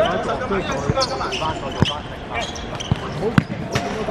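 Futsal ball kicked on a hard court: four sharp thuds spread through the moment, the loudest near the end, with players shouting.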